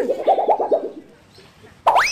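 A young girl sobbing in a quick run of short choked pulses, then breaking into a rising wail near the end.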